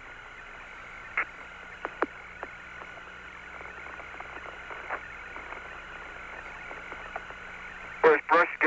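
Open air-to-ground radio channel from the Apollo 17 moonwalk: a steady hiss with a faint low hum, broken by a few short clicks and pops, with no voices.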